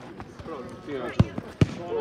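Two sharp thumps of a football being struck, about half a second apart, over players shouting.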